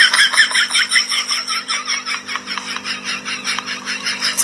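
Rapid, even chirping, about seven or eight short chirps a second, over a steady low hum.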